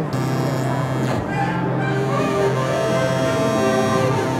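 A Bitwig Polysynth patch playing a sustained synthesizer sound, its tone shifting as its oscillator and filter parameters are tweaked in real time from a hardware controller.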